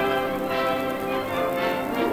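Dance orchestra playing the instrumental introduction of an old 78 rpm record, holding a full chord that changes near the end.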